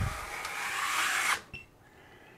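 Wide steel skimming blade scraping across wet drywall joint compound, probably thickened from sitting a few minutes: a steady scraping hiss with a low thump right at the start. It cuts off suddenly about a second and a half in.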